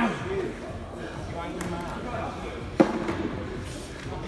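Indistinct voices in a large echoing gym, with one sharp thud near the end.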